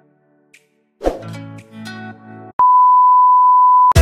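Edited-in sound effects: a short musical chime with held notes about a second in, then a single steady high-pitched beep lasting just over a second, cut off as a beat-driven music track starts at the very end.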